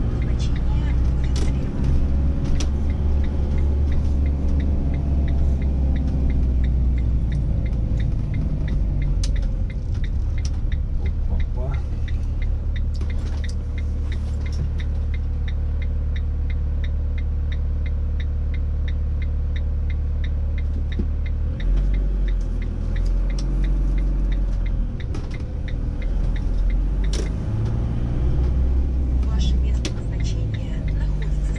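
Motorhome's engine and road rumble heard from inside the cab while driving slowly through town, a steady low rumble whose note shifts about two-thirds of the way through, with a faint regular ticking over it.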